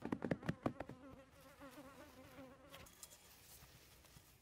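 A quick run of pats and rustles as hands press grass turf onto soil, then a flying insect buzzing for about a second and a half, its pitch wavering up and down.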